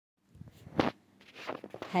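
Scattered soft clicks and knocks, with one louder short burst just under a second in. A woman's voice starts at the very end.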